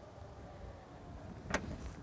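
Ford Focus wagon's tailgate pulled shut, latching with one short thud about one and a half seconds in. It closes fully over the large bicycle box in the boot.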